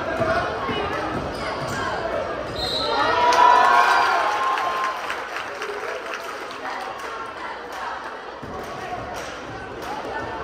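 Basketball game sounds on a hardwood gym court: a ball dribbling and the spectators' voices. The crowd gets louder about three seconds in, then settles.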